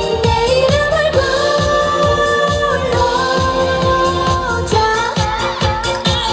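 Upbeat Korean pop song played loud over a stage sound system: a steady dance beat under a voice holding long, level notes.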